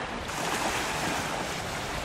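Steady wash of small waves on a sandy beach, heard as an even hiss.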